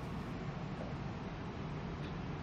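Steady low hum with an even hiss: the background drone of a ferry's bridge while the ship is under way.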